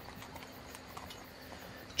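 Faint horse hooves clip-clopping at a steady walk, a carriage ride ambience laid under the reading, heard as light scattered clicks.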